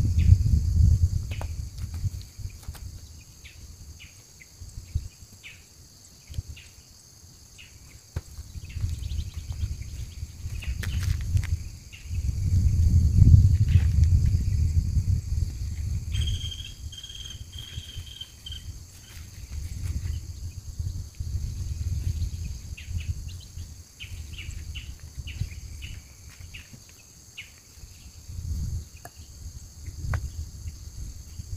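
A steady drone of insects, with gusts of wind rumbling on the microphone that come and go and are strongest a little before the middle. A short run of high chirps is heard just past the middle.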